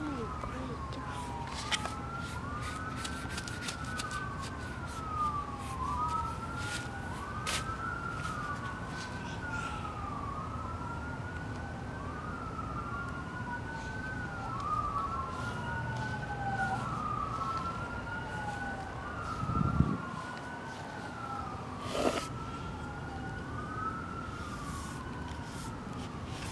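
A siren wailing over and over in the distance, each cycle a quick rise and a slower fall in pitch, with two wails overlapping slightly out of step. A few sharp clicks and a brief low thump about twenty seconds in.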